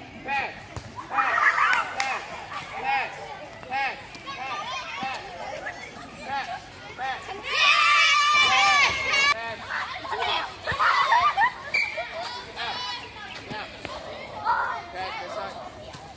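Children's voices shouting and calling out, with a loud stretch of high-pitched yelling about eight seconds in that lasts a second or two.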